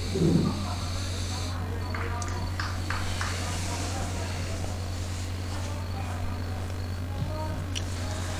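Faint open-air football pitch ambience over a steady low hum, with distant players' calls and a few brief faint sounds from the field.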